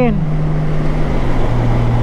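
Honda Gold Wing's flat-six engine droning steadily at highway speed in seventh gear, with wind rush over the microphone. A little past a second in, the engine note drops to a lower pitch.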